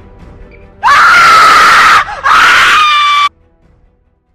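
A loud, high-pitched scream in two long cries of about a second each with a short break between them. The first swoops up in pitch at its start, and the second cuts off suddenly. Faint music plays before it.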